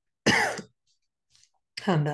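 A woman clears her throat once, a short, loud sound, then begins speaking near the end.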